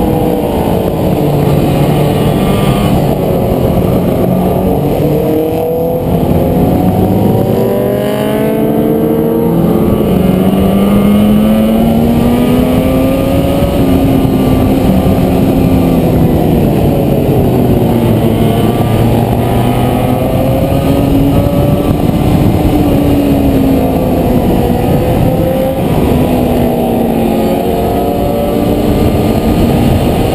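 Onboard sound of a classic motorcycle's engine under way. Its pitch rises and falls several times as the rider opens and closes the throttle and changes gear through the bends.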